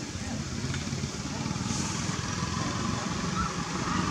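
A motor engine running steadily with a low, fast-pulsing rumble, with faint voices in the background.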